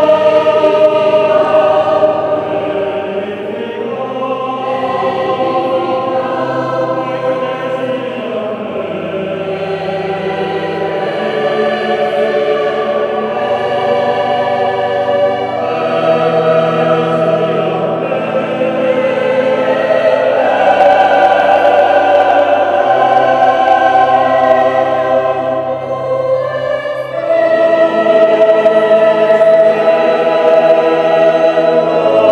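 Mixed choir of women's and men's voices singing a sustained piece in several parts, unaccompanied as far as can be told. It dips in loudness a few seconds in and swells louder in the second half and again near the end.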